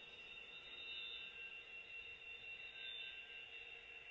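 Faint, steady sound of an HO-scale model train creeping along at a crawl: a thin, constant high whine over a low, even hum.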